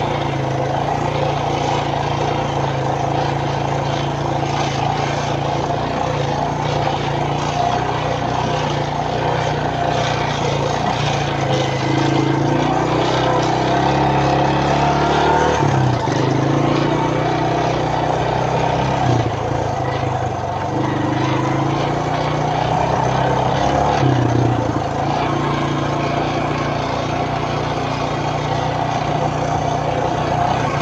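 Suzuki Quad Runner LT160 ATV's single-cylinder four-stroke engine running under way across rough grass, its engine speed rising and falling several times through the middle stretch.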